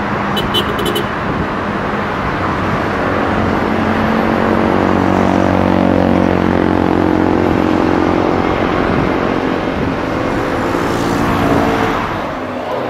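Steady engine noise on an airport apron, with a deeper, humming engine note building about four seconds in and easing off near the end.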